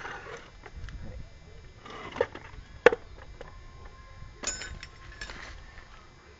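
Knocks and clinks of a Fiat Uno gearbox casing being handled and turned over on its metal stand, with the sharpest knock about three seconds in and short bursts of scraping and rustling noise.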